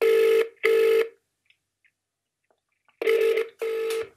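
Ringback tone of an outgoing phone call heard through a smartphone's loudspeaker while the call waits to be answered: two double rings, each made of two short beeps, about three seconds apart.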